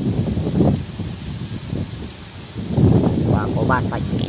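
Wind buffeting the microphone, a low rumble that swells and eases. A voice speaks briefly near the end.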